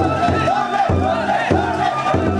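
Large drum on the front of a wooden festival yagura float struck in a repeating beat, about two strokes a second, while a crowd of haulers shouts a chant together.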